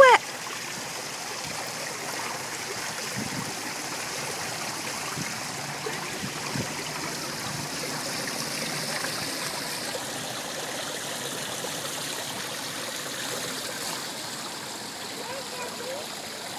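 Fountain water running steadily down a tiled wall and splashing onto a metal drain grate, an even rushing splash.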